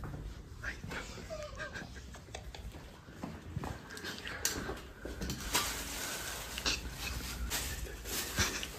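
Black plastic bag being handled, rustling and crinkling in sharp bursts that grow busier about halfway through as it is opened.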